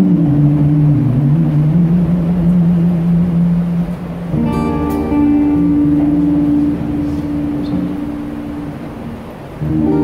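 Acoustic guitar chords strummed and left ringing: one struck about four seconds in fades slowly over five seconds, and the next comes in just before the end. A long low sung note, sliding down at first, fills the first four seconds.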